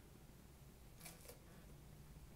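Near silence: room tone, with two faint soft clicks close together about a second in.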